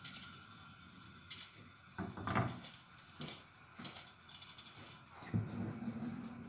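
A few light clicks and knocks of cookware being handled at a gas stove, spaced irregularly, the loudest about two seconds in.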